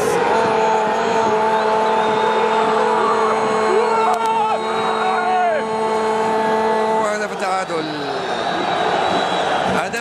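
A football commentator's goal cry, one long held note of about seven seconds, followed by a rougher stretch of noise until the end.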